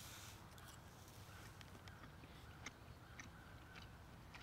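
Near silence: two people quietly chewing a mouthful of food, with a few faint ticks of metal forks.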